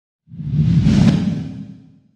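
A whoosh sound effect with a deep rumble under it for a logo reveal. It swells in about a third of a second in, is loudest around one second and fades out by the end.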